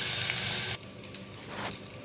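Chopped onion, ginger and garlic sizzling in hot oil in a kadhai as it starts to sauté, the sizzle cutting off abruptly under a second in. A quieter stretch follows with a few faint handling sounds.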